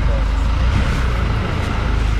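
Steady low background rumble with no distinct event in it.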